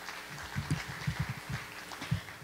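Soft, irregular low thumps, four or five a second, over faint room hiss: handling and movement noise on a stage picked up by the microphone.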